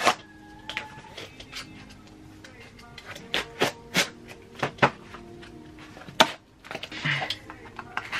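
A cardboard shipping box being handled and opened: a string of sharp taps and knocks, several coming close together in the middle and one more at about six seconds.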